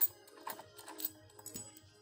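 A sharp metallic click, then a few faint ticks, as a bolt-and-washer puller draws a tailpiece bushing free of the guitar body and is lifted out.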